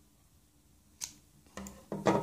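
A single snip of scissors cutting through a strand of yarn, a short sharp click about a second in.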